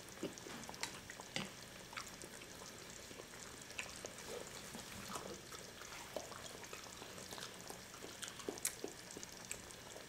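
Eating at a table: soft chewing with scattered light clicks of chopsticks against bowls, over a faint steady hiss of food cooking.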